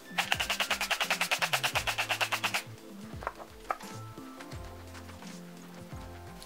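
Setting spray misting from a spray bottle in a rapid, pulsing hiss of about ten pulses a second, lasting about two and a half seconds and then stopping, followed by a couple of faint clicks. Soft background music plays underneath.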